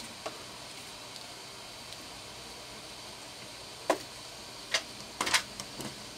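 Scattered handling clicks and knocks from small circuit boards and their wires being fitted by hand, with a quick cluster of clicks about five seconds in, over a faint steady hiss.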